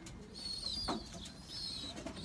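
Faint pigeons cooing in the background, with a thin, high bird chirp about half a second long early on and a brief soft rustle near the middle.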